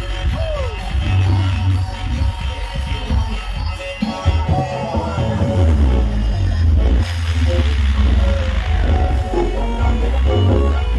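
Loud dance music with a deep, heavy bass line, played through a truck-mounted sound-system battle rig of stacked speaker cabinets and heard at close range.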